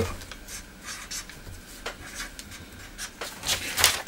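Felt-tip pen scratching on paper in short strokes while drawing and lettering a circuit diagram, with a quicker run of strokes near the end.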